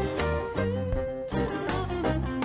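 A live band plays an upbeat worship song: electric guitar over bass and drums, with a steady beat.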